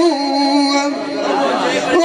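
A man's voice amplified through a microphone, in a half-spoken stretch of a Punjabi folk song, over a steady held drone tone.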